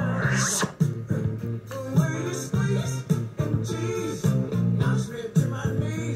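Slot machine bonus-round music: a rhythmic tune with a steady beat and a repeating bass line, with a short rising sweep at the very start.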